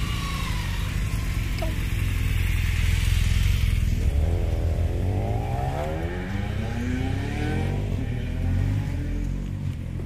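Motorcycle engines running close by: a BMW touring motorcycle rides slowly past, its engine rumbling, loudest a few seconds in. From about four seconds in, an engine pulls away, rising in pitch in two sweeps as it accelerates.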